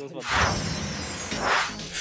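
Glass-shattering transition sound effect over music. It starts suddenly about a quarter second in and rings on, swelling once more near the end.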